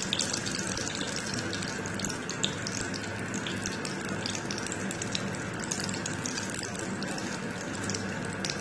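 Samosas deep-frying in a pan of hot oil: steady sizzling thick with fast crackling, and a few louder pops.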